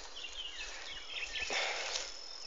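Insects trilling steadily at a high pitch, with short high chirps over the trill in the first second and a brief rustle near the end.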